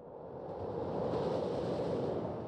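A sound-effect whoosh: a rush of noise that swells over about a second and a half and then eases off.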